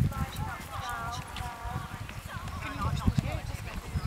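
Horse trotting on grass, its hoofbeats soft low thuds, with indistinct voices in the background.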